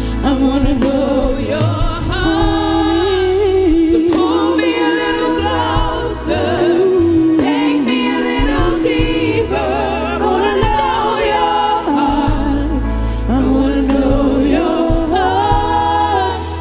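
Live gospel praise-and-worship music: a group of singers on microphones singing together over keyboard and drums.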